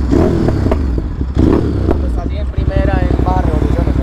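Ducati Monster 937's 937 cc Testastretta V-twin idling with an uneven, loping beat, like a little horse galloping.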